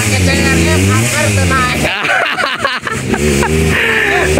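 Single-cylinder Honda CRF trail bike engine revving up and down as it climbs a steep rutted dirt slope, with people shouting over it. The engine sound drops away about two seconds in.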